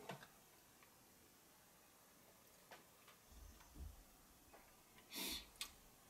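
Near silence: room tone with a few faint clicks, a couple of faint low thuds in the middle and a brief hiss near the end.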